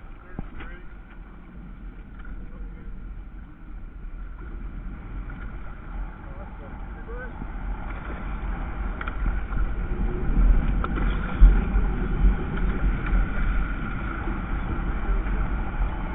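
A hooked cobia thrashing and splashing at the surface of shallow water as a landing net is worked around it, getting louder from about halfway through. Wind rumbles on the microphone throughout.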